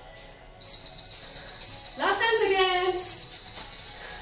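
A long, steady, high-pitched electronic beep starting about half a second in and holding one pitch for over three seconds, the kind an interval timer gives to end a workout set. A brief voice call sounds over it about two seconds in.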